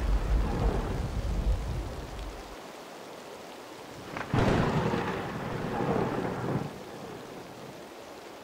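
Thunderstorm: steady rain with a rolling thunder rumble that fades out over the first couple of seconds. A second thunderclap breaks sharply about four seconds in and rumbles for about two seconds before the rain tails off.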